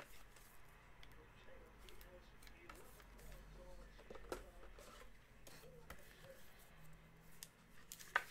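Near silence with a few faint clicks and light rustles from hands handling a trading card and a clear plastic card holder.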